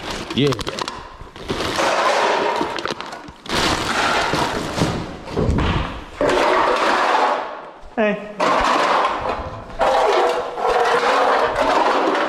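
Plastic garbage bags and trash being rummaged and shifted by hand in a dumpster, in repeated rustling, crinkling stretches a second or two long.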